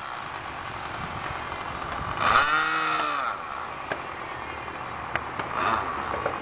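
Electric motor and propeller of an RC model plane whining in swells: the pitch rises and falls as the throttle or distance changes, loudest about two seconds in and again briefly near the end, over a steady hiss.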